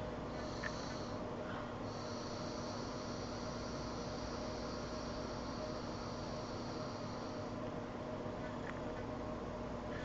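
E-cigarette with a rebuildable dripping tank atomizer being drawn on: a faint, steady high-pitched whine, first briefly about half a second in, then held from about two seconds in until about seven and a half seconds in.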